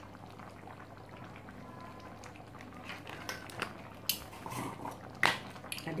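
Coconut-milk chicken curry simmering in a frying pan, the sauce bubbling with small pops that come thicker in the second half. A sharp click sounds about five seconds in.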